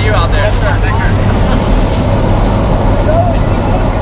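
Loud, steady drone of a skydiving jump plane's engine and propeller with rushing air noise, heard from inside the cabin at altitude. Brief shouted voices rise above it near the start and again about three seconds in.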